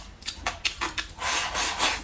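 Close-miked eating sounds: a few light clicks of wooden chopsticks, then a rasping scrape of just under a second as rice and greens are shovelled from a ceramic bowl held at the lips into the mouth.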